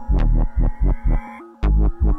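Korg Electribe SX (ESX-1) sampler playing an electronic beat from a mixed-kit pattern: fast, heavy bass-drum hits with sharp clicks and a slowly rising synth tone above. The beat drops out briefly about a second and a half in, then comes straight back.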